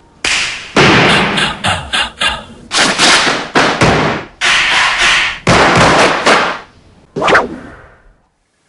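A quick run of loud, sharp hits and whooshes, each one tailing off, a dozen or so in all, breaking off shortly before the end: sound effects laid over fast dance moves.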